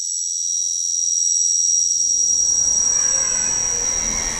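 Steady high-pitched electronic whine, a laser-beam sound effect for a beam tracing a logo outline, holding one pitch; a low rumble swells in beneath it from about halfway.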